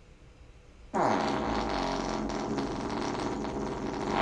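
One long human fart, starting suddenly about a second in and holding a steady pitch for about three seconds.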